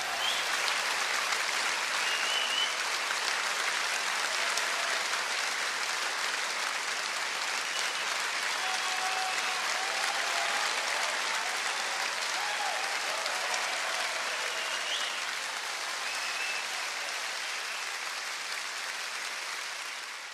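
Live club audience applauding steadily at the end of a rock set, with a few cheers and whistles heard above the clapping.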